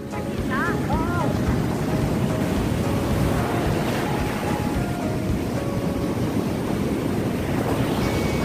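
Ocean surf breaking and washing up a sandy shore in a steady, loud rush, with wind buffeting the microphone. A short voice call comes about a second in.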